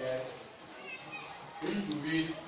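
Children's voices in a classroom, talking over one another, with a louder voice about a second and a half in.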